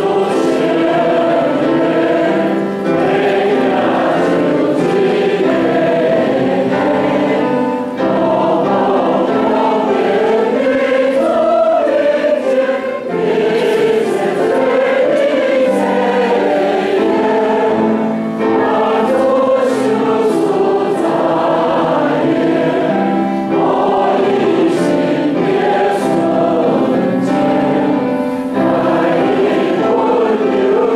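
A church congregation singing a hymn together with piano accompaniment, in continuous phrases with a short breath about every five seconds.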